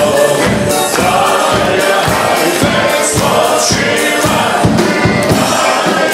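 Live wedding band playing a song with many voices singing together, and guests clapping along in time on the beat.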